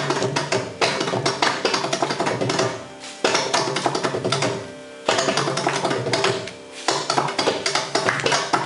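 Mridangam thani avartanam (the percussion solo of a Carnatic concert): fast runs of sharp, ringing hand strokes on the double-headed drum. The phrases break off briefly about three, five and six and a half seconds in.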